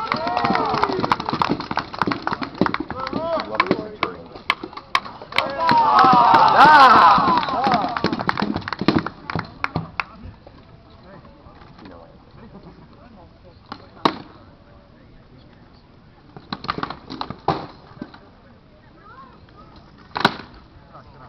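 Rattan weapons striking shields and armour in armoured mock combat: a rapid run of sharp knocks, with shouting voices over them that are loudest about six to eight seconds in. After about ten seconds, only a few scattered knocks.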